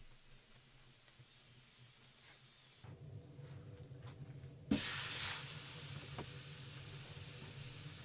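A metal kettle is set down on a hot wood stove top with a single sharp knock a little past halfway through. A steady sizzling hiss follows, from water on the hot metal.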